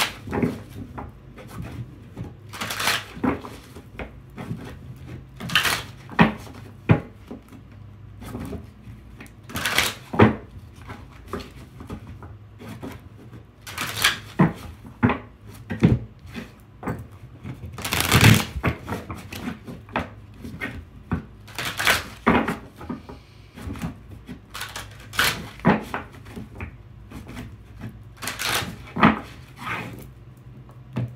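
A tarot deck being shuffled and handled on a cloth-covered table: short, crisp bursts of cards flicking and knocking every few seconds, over a low steady hum.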